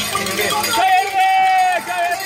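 A voice holding one long shouted cheer on a steady pitch for about a second, starting just before the middle, after shorter bits of voices.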